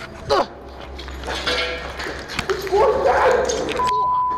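Animal-like growling from a masked humanoid figure, loudest shortly before the end, over the rustling and knocks of a handheld camera being swung around.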